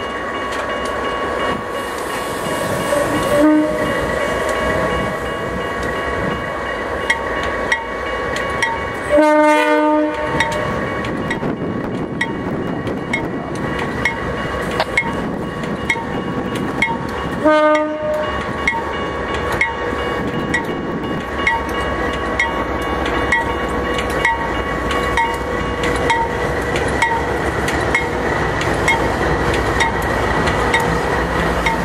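A light-engine consist of GE diesel locomotives, led by a C44-9W, pulls slowly past with a steady engine rumble while a grade-crossing bell dings evenly. The horn sounds two short blasts, about 9 and 17 seconds in.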